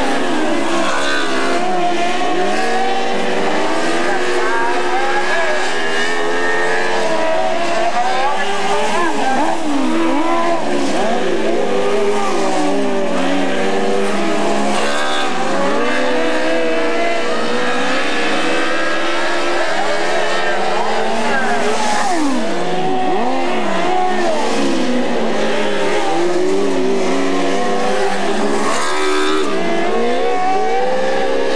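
Several dirt-track race car engines running hard around the oval, their pitch rising and falling over one another as the cars accelerate down the straights and back off for the turns. The sound is loud and unbroken throughout.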